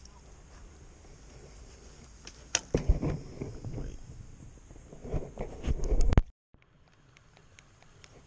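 Close handling noise from a freshly caught whiting held in a fish lip-grip: a run of loud knocks, clicks and rustles starting about two and a half seconds in, cut off abruptly about six seconds in.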